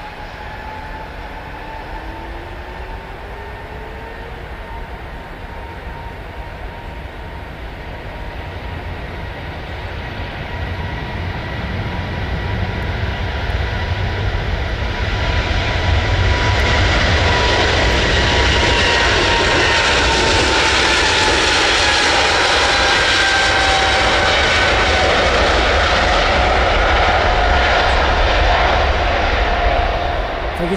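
Boeing 777 jet engines on a takeoff roll, a high whining tone over a deep rumble. The sound grows steadily louder from about ten seconds in and stays loud as the airliner passes close by.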